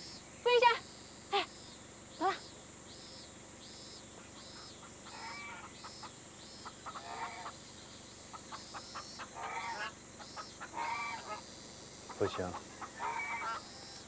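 Caged domestic ducks quacking in short scattered bursts over a regular high chirping in the background.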